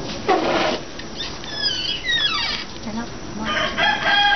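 Chickens calling: a drawn-out call that falls in pitch around the middle, then another steady, held call near the end.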